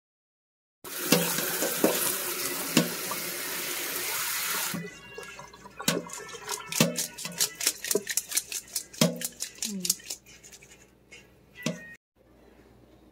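Water running hard from a kitchen tap for about four seconds, then shut off abruptly. A run of quick clicks and light knocks follows.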